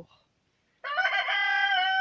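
A rooster crowing: after a brief quiet, one long, drawn-out crow starts just under a second in.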